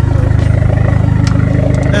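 Dodge Neon SRT-4's 2.4-litre turbocharged four-cylinder idling: a steady, low, evenly pulsing engine note, heard from beside the rear of the car.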